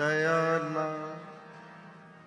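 Sikh kirtan in raag Basant: a note held over a steady drone, coming in sharply at the start and fading away over about a second and a half.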